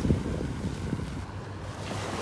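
Wind rumbling on the microphone, with the wash of small waves at the shoreline underneath.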